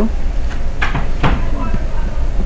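A felt-tip marker writing on a paper worksheet, two short strokes about a second in, over a steady low hum.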